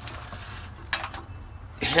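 Coaxial cables being grabbed and brushed against each other by hand, with a brief rattle about a second in, over a low steady hum.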